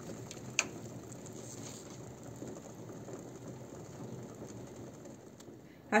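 Pot of water with chopped green beans boiling on the stove: a soft, steady bubbling, with a single sharp click about half a second in.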